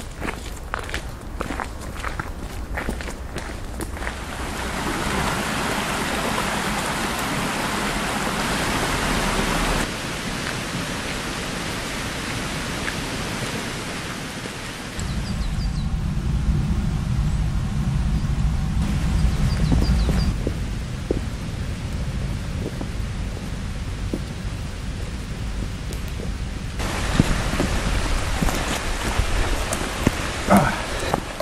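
Footsteps on a forest path, then a steady rushing of wind, with wind rumbling on the microphone from about halfway through. The sound changes abruptly several times.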